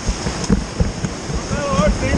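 Whitewater rapids rushing loudly around a raft, with wind buffeting the camera microphone and irregular low thumps. A person shouts near the end.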